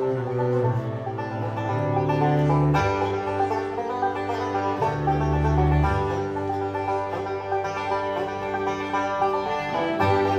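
Live acoustic band playing an instrumental tune, with plucked string notes over sustained low bass notes.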